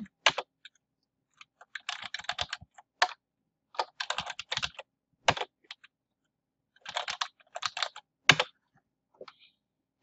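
Computer keyboard typing: short bursts of keystrokes, about a second each, around two seconds in, four seconds in and seven seconds in, with single key presses between the bursts.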